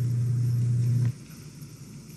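A steady low hum that cuts off suddenly about a second in, leaving faint background noise.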